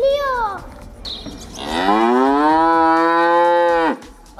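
A cow mooing: one long, loud moo of about two seconds, starting about halfway in, rising in pitch and then held level before it stops. It is preceded by a brief wavering pitched sound at the very start.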